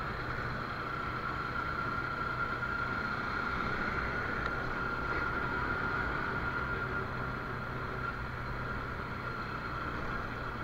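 Bajaj Pulsar 200 NS single-cylinder motorcycle engine running steadily at a cruise, with wind noise, heard from a helmet-mounted action camera. The drone holds an even pitch and level with no gear changes or revving.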